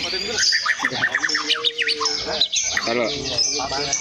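White-rumped shama (murai batu) singing a fast, unbroken stream of varied whistles and sweeping chirps. This is the bird's full, energetic song, typical of its display toward a rival.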